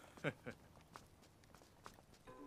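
Faint footsteps of people walking, a few separate steps spread out, with a short voice sound near the start.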